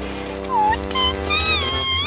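Background music under short, high-pitched cartoon character cries whose pitch slides up and down, starting about half a second in.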